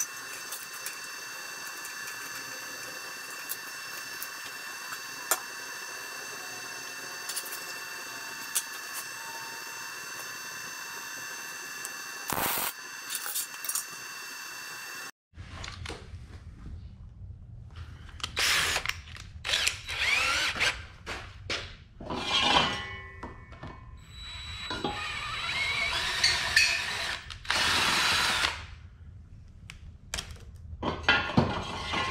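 For about the first fifteen seconds, a steady hiss with several high whistling tones, from the small portable gas torch heating a bolt for bending. After a short break, a cordless drill runs in several separate bursts, the longest about two seconds, among clanks of steel parts.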